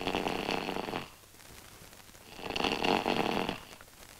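A sleeping person snoring: two rasping snores, the second, about two seconds after the first ends, longer and louder.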